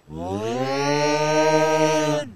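A creature's single long, loud yell, an open-mouthed 'aah' that slides up in pitch over the first half second and then holds steady.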